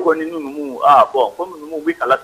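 Speech only: a man talking in a radio broadcast.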